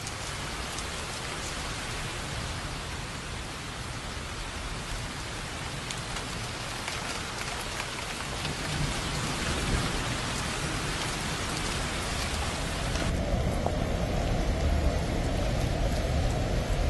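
Steady heavy rain falling on hard wet paving, an even hiss with scattered drop ticks. About thirteen seconds in the sound turns duller and heavier, with more low rumble.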